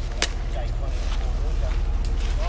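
A vehicle engine idling: a steady low rumble with an even pulse, broken by one sharp click near the start, with faint distant voices.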